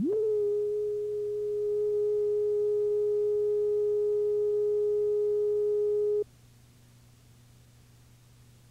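A steady electronic line-up tone, the slate tone recorded on videotape with a TV commercial's identification card. Its pitch settles upward in the first instant, holds level, then cuts off suddenly about six seconds in, leaving faint tape hiss and hum.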